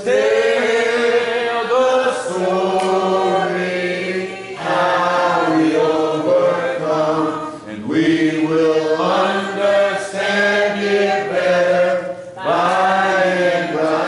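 Church congregation singing a hymn a cappella, several voices holding long notes in phrases with short breaks between them.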